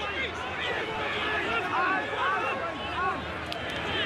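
Stadium crowd noise: many voices shouting and cheering at once over a steady roar.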